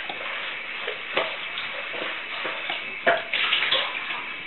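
Miele WT2670 washer dryer's drum tumbling a wet towel load during a 95 °C cotton wash: water sloshing and towels splashing at irregular moments, with the loudest and busiest splashes near the end.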